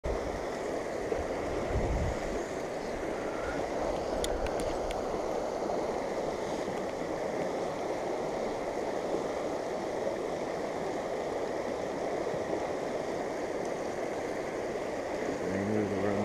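River current rushing steadily over a shallow, rocky riffle. A brief low rumble comes about two seconds in, and a few faint ticks come around four seconds in.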